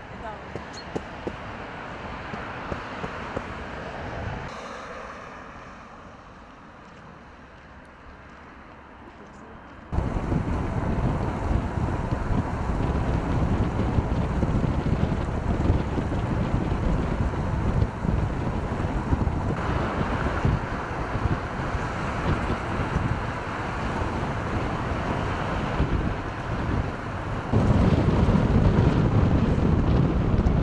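Wind buffeting the microphone: loud, rough noise that starts suddenly about ten seconds in and gets louder again near the end. Before it comes a quieter stretch of outdoor noise with a few clicks.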